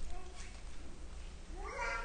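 A small child in the congregation crying out: a short wail that bends up and falls away near the end, after a faint whimper at the start, over a steady low electrical hum.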